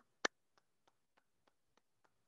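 Hand claps coming through a video call: one sharp clap near the start, then a run of faint, even claps about three a second.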